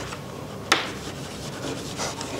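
Chalk writing on a blackboard: faint scratching strokes, with one sharp tap of the chalk against the board about two thirds of a second in.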